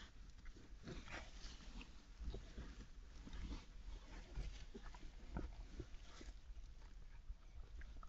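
European badger cubs shuffling and grooming in straw bedding inside a sett: faint, irregular rustling and scratching with scattered soft clicks.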